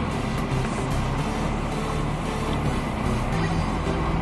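Cashews, almonds and raisins frying in hot desi ghee in a kadhai, a steady sizzle as they are roasted to light brown.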